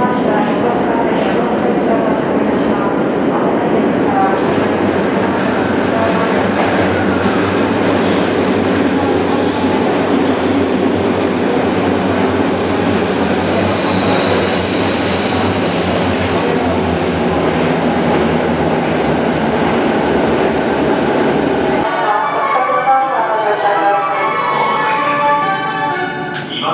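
Electric commuter train, an E217 series Yokosuka Line set, running along the adjacent track, its wheels and motors loud and echoing in an underground station. High-pitched tones come and go in the middle. The noise stops abruptly near the end and a voice follows.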